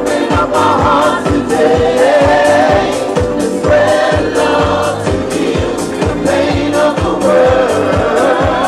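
A group of singers singing together live into microphones over an amplified dance-music backing track, with a steady kick-drum beat of about two beats a second.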